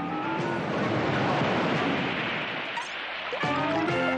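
Cartoon sound effect of a big wave breaking and washing over someone: a long, loud rush of surf over background music.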